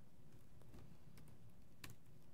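Faint keystrokes on a computer keyboard: a few scattered clicks, the sharpest one near the end, over a low steady room hum.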